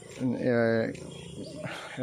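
A man's voice holds one drawn-out vowel sound for about half a second early on, then gives way to quieter outdoor background.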